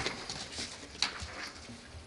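Quiet room noise with a sharp click about a second in and a few lighter ticks and rustles.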